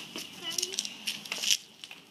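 A child's brief vocal sound about half a second in, among a few sharp knocks and rattles from a small bicycle being ridden on concrete; the loudest knock comes near the end.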